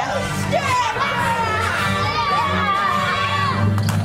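A crowd of children shouting and yelling excitedly together, many overlapping voices, over background music.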